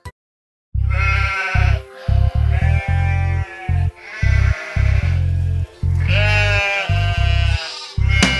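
Sheep bleating about four times over background music with a heavy bass line, after a brief silence at the start.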